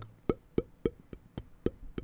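Rhythmic tongue clicks made right up against a microphone, imitating ASMR sound effects: about seven sharp, hollow clicks, roughly three a second.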